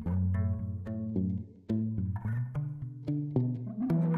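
Background music: a melody of short, distinct notes over a low bass line.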